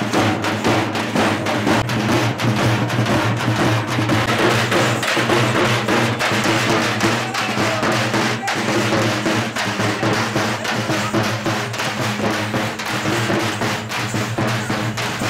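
Street procession band's snare and bass drums beating a fast, dense rhythm over a steady low drone.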